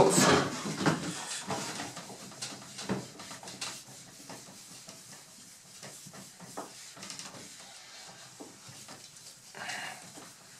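A shellac polishing pad rubbed in sweeping strokes over a walnut-veneered tabletop, applying top-coat polish, making soft, irregular swishing noises.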